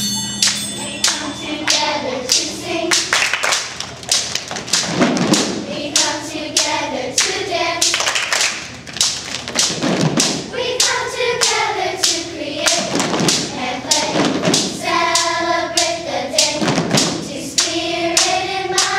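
A group of children singing together in unison over a steady beat of hand-drum strikes and claps.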